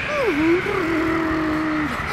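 A man's drawn-out, fluttering shivering vocalization like a "brrr": a short falling glide, then a held low note lasting well over a second, as if from the cold.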